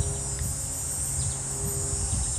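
Steady high-pitched insect chirring in the background, with a low rumble of wind on the microphone.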